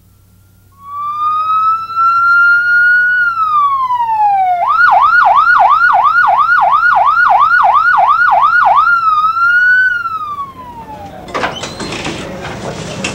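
Emergency vehicle's electronic siren. It starts about a second in with a slow wail that rises and then glides down, switches to a fast yelp of about three cycles a second, then goes back to a wail and fades near the end.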